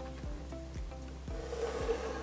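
Pencil lead scratching softly on paper as a line is drawn along a plastic set square, over quiet background music.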